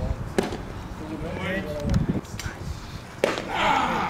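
A pitched baseball popping into a catcher's leather mitt with one sharp smack about half a second in, followed by voices calling out from around the field.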